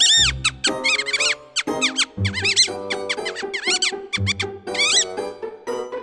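High, squeaky chattering gibberish voice of a cartoon mouse: quick runs of chirping syllables that rise and fall in pitch, with short breaks between the runs, over background music.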